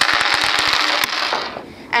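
Two dice thrown onto a tabletop, clattering and rolling in a quick run of clicks for about a second and a half before coming to rest.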